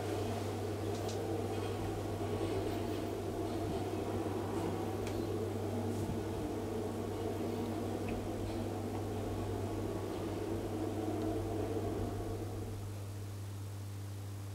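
1991 KONE hydraulic elevator car travelling down between floors, a steady low hum under a rushing running noise. The running noise dies away near the end as the car comes to a stop, leaving the hum.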